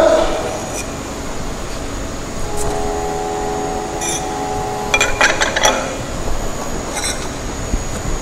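Steel trowel scraping and clinking against a metal Vicat mould as cement paste is scraped out of it. A few sharp clicks and scrapes come about halfway through, and again near the end, over steady room noise.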